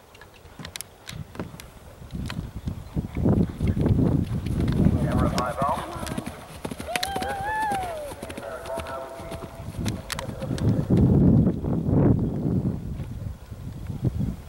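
A horse galloping on grass and jumping fences: quick hoofbeats with heavy low thuds and rumble, loudest twice, a few seconds in and again near the end. A person's voice briefly calls out in the middle, its pitch sliding up and down.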